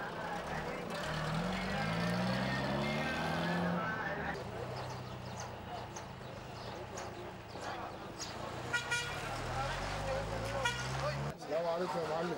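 Pickup truck engine revving up and running, its pitch rising about a second in and holding for a few seconds. A second engine run starts later and cuts off suddenly near the end. Voices of people around the vehicles are heard throughout.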